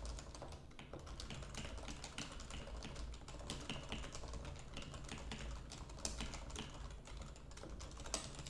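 Typing on a computer keyboard: a quick, irregular run of light key clicks.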